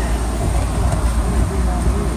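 Steady low rumble of a vehicle's engine and road noise, heard from inside the moving vehicle's cabin.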